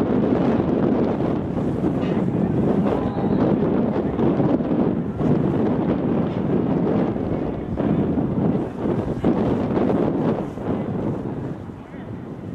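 Wind buffeting the microphone: a dense, fluctuating rush of noise that eases near the end.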